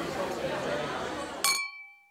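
Background chatter of voices, then a single bright clink of glass about one and a half seconds in that rings on with a clear tone and fades out.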